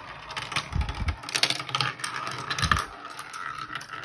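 Marbles rolling and clattering through a plastic marble-run track: a steady rolling rattle full of small clicks, with a dull knock about a second in and another near three seconds.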